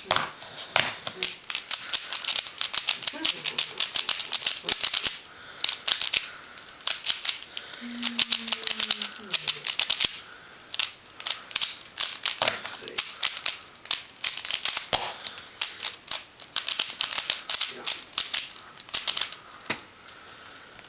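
A QiYi Thunderclap v1 3x3 speedcube turned fast one-handed: rapid runs of plastic clicking and clacking as the layers snap round, broken by short pauses between runs.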